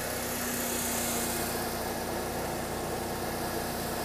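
Mercedes-Benz CLK (W208) engine idling with a steady low hum.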